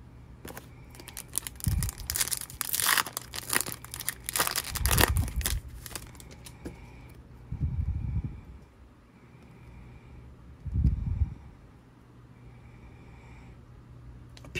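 Crinkling and tearing of a trading-card pack wrapper being ripped open, dense from about one to six seconds in, followed by a couple of dull bumps as the stack of cards is handled.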